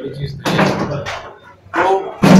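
A man talking in a small room, with a sharp knock or thump about half a second in.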